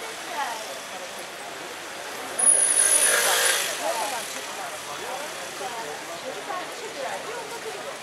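Street traffic at a busy crossing with people chattering around. About two and a half seconds in, a sudden loud hiss from passing traffic fades out over a second or so.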